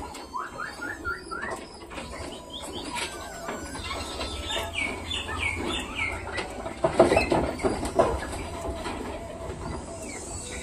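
Small birds calling in quick runs of short falling chirps, over a flock of pigeons pecking grain on concrete with many small clicks. Two louder, lower calls come near the end, with a low rumble underneath in the middle.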